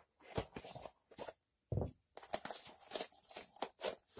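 A cardboard shipping box being handled and opened by hand: short, irregular scrapes and rustles of cardboard and packing tape, with a dull knock a little before halfway and a denser run of scraping in the second half.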